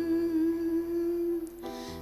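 A woman singing into a microphone, holding one long note with a slight waver. The note stops about a second and a half in, and a new phrase begins near the end.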